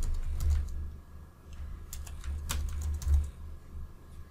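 Typing on a computer keyboard: an irregular run of quick keystrokes as a short name is entered.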